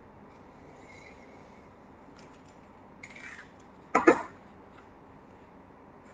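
A person coughing, a short double cough about four seconds in, over faint room tone, with a soft rustle just before it.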